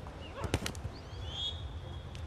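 Beach volleyball being struck during a rally: a couple of sharp hand-on-ball hits about half a second in, over a low outdoor hum. A brief high chirp-like tone follows about a second and a half in.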